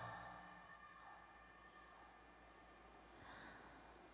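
Near silence in a pause of a live song: the last sung note fades away in the hall's reverberation, then a faint breath comes about three seconds in.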